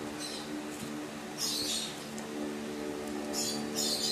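A steady background hum of several held tones, with two brief soft hissing rustles, about one and a half and three and a half seconds in.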